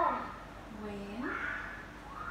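A person's voice making a wordless sound: a low vocal sound held steady that rises in pitch about a second in, followed by a short breathy sound.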